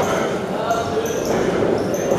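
Spectators shouting and calling out continuously during an amateur boxing bout, with a few dull thuds from the fighters in the ring.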